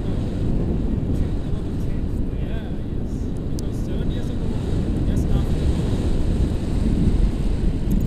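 Airflow buffeting the camera's microphone in flight under a tandem paraglider: a loud, steady low rumble.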